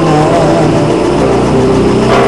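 Recorded pop ballad playing loudly while a person sings along, a held wavering note trailing off near the start.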